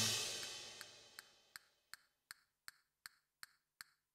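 The closing music's last chord dies away over about a second, then a steady, dry ticking follows at about two and a half ticks a second.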